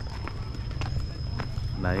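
Footsteps on a brick path, about two a second, over a steady low rumble and a thin, steady high whine; a voice says one word near the end.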